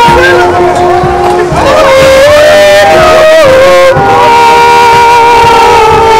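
Several voices singing loud, long held notes in harmony, moving to new notes every second or so.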